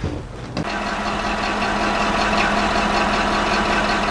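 A motor running steadily with a constant hum, starting abruptly about half a second in.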